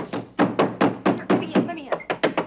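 Fistfight: a rapid series of thuds and blows, about four or five a second, mixed with men's grunts.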